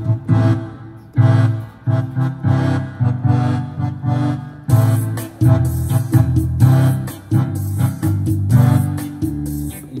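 Yamaha PSR-A5000 arranger keyboard played in chords with its Full Keyboard fingering type, which detects chords across the whole keyboard: a run of chords with a strong low bass, each held briefly, with short breaks about a second in and near five seconds.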